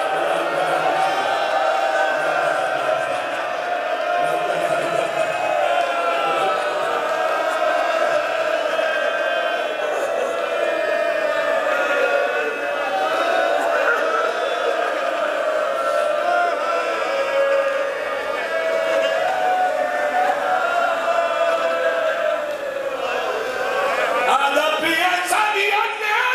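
A large gathering of men mourning aloud together, many voices overlapping in one continuous, sustained lament.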